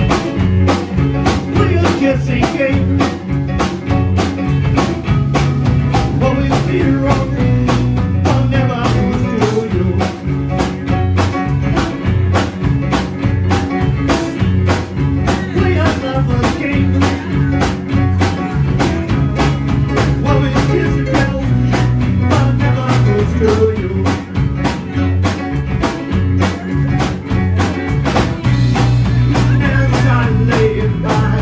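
A live band playing a rock song: electric guitar, bass guitar, drum kit and keyboard, with a steady drumbeat and a prominent bass line.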